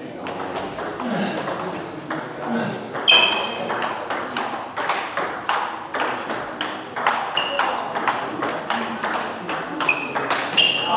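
Table tennis rally: a steady run of sharp clicks and pings, several a second, as the ball is hit back and forth by the bats and bounces on the table, some bounces ringing briefly.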